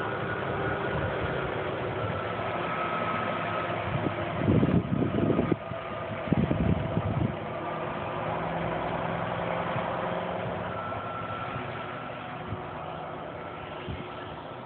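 An engine running steadily with a faint whine, joined twice around the middle by louder low rumbling bursts.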